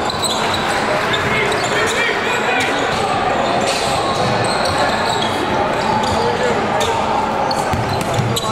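Live sound of a basketball game in a gym. A ball bounces and shoes squeak briefly on the hardwood court over a steady hubbub of voices, with the echo of a large hall.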